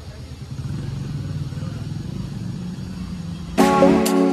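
Low, steady rumble of a small two-wheeler engine running, a little louder from about half a second in. Background music starts abruptly just before the end.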